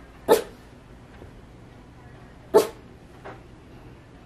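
Rat terrier barking: two sharp single barks about two seconds apart, with a much softer third bark shortly after the second.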